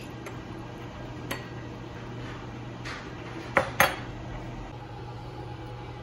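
Glassware clinking: a light clink about a second in, then two sharp clinks in quick succession about three and a half seconds in, as a glass measuring jug and drinking glasses are handled and set down on a stone countertop.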